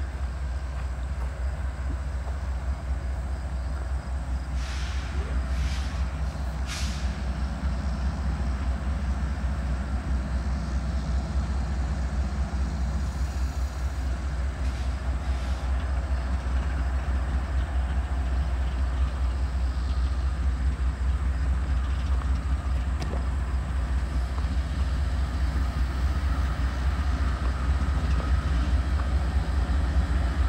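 Union Pacific diesel locomotives approaching slowly at the head of a freight train, a steady low engine rumble that grows slightly louder as they near. A few short hisses come about five to seven seconds in.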